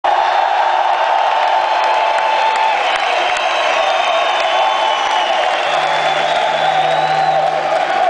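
A large arena crowd cheering and whooping between songs, a steady dense roar. A low held note from the stage comes in over it about two-thirds of the way through.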